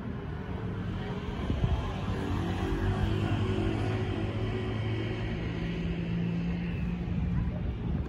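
Road traffic: a motor vehicle's engine running close by, a steady low drone over general street noise.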